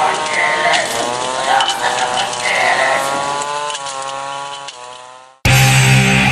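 Music: the end of an album intro, layered sustained tones sliding slowly down in pitch, fades out. About five and a half seconds in, a thrash metal song starts abruptly with loud distorted electric guitars.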